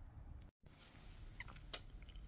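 Near silence: faint room tone, broken by a brief total dropout about half a second in, with a few faint clicks after it.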